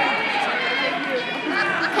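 Spectators' voices in a gym crowd, several people talking over one another with no single clear speaker.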